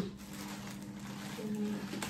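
Faint rustle of a synthetic-fibre wig being drawn out of a cylindrical container, over a steady low hum, with a short hummed note from her about a second and a half in.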